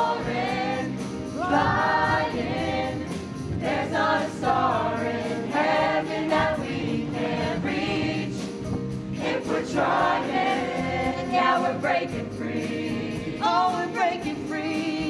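A stage musical's cast singing together in chorus, accompanied by a live pit band.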